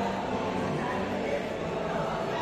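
Many people talking at once in a large exhibition hall, a steady murmur of unintelligible voices with the hall's echo.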